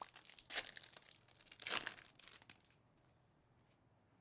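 A 2020-21 Panini Mosaic basketball card pack's foil wrapper being torn open and crinkled in several short bursts over the first two and a half seconds. The loudest rip comes just under two seconds in.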